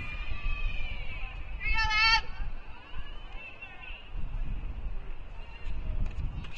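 A high-pitched human shout with a wavering pitch, about half a second long, about two seconds in, over a low steady rumble.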